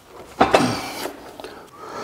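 A single sudden clunk of metal parts being worked by hand, about half a second in, trailing off into a short scraping rustle.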